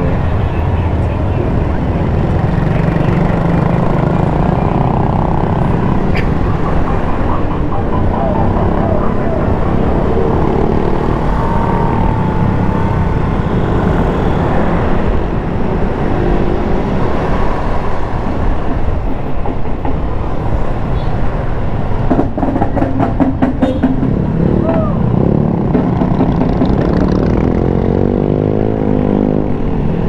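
Motorcycle riding in city traffic, a steady low rumble of engine and wind on the microphone; near the end the engine note rises as it accelerates.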